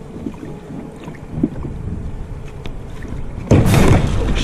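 Water sloshing around a plastic fishing kayak, with wind on the action camera's microphone, as a low rumbling noise. A sudden, much louder rush of noise comes in near the end.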